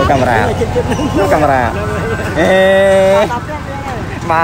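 A vehicle horn sounds one steady note for about a second, a little past halfway through, over people talking in a busy street.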